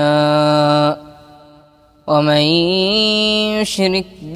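A boy's voice chanting Quranic recitation (tajweed): one long held note, then a pause of about a second in which the sound dies away, then the melodic recitation resumes.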